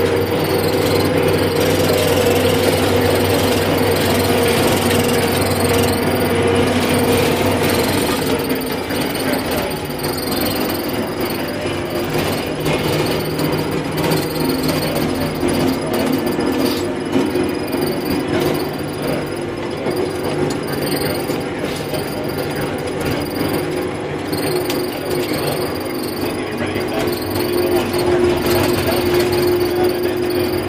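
Tractor engine and drivetrain running steadily under way, heard from inside the cab, with a steady whine that drops in pitch about eight seconds in.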